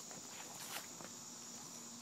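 Steady high-pitched insect chorus, typical of crickets, with a few faint taps, like footsteps on grass.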